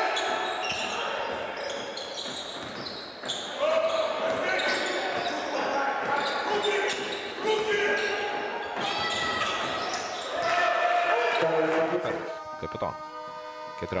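Basketball game sound in a gym: sneakers squeaking on the hardwood court, the ball bouncing and players calling out, echoing in the large hall. Music starts near the end.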